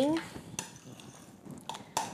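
Metal spoon scraping and clinking against a glass bowl while mashing hard-boiled egg yolks with mayonnaise and mustard into a paste, with a couple of sharper clicks near the end.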